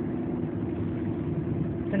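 Car engine running, heard from inside the cabin as a steady low hum with engine noise underneath.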